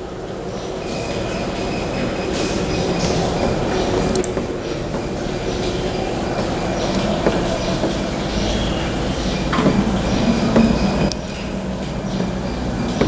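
A steady low rumble with a few faint high whining tones, growing louder over the first few seconds, with scattered light clicks.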